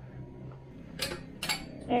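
Two sharp metallic clinks about half a second apart as the heavy metal specimen stage assembly of a scanning electron microscope knocks while being lifted out of its chamber.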